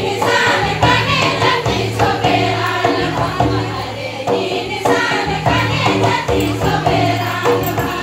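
A group of voices singing a folk song in chorus over regular drum beats and a steady low drone.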